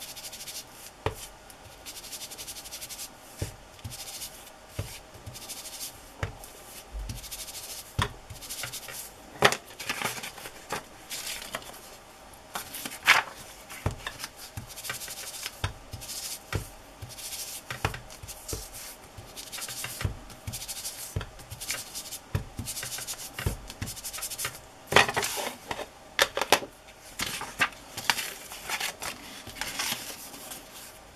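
Ink blending tool rubbed and dabbed over the edges of old book paper, in irregular scrubbing strokes with occasional sharper knocks.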